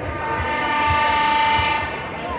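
A loud horn blast held at one steady pitch for nearly two seconds, rich in overtones, over the noise of a crowd.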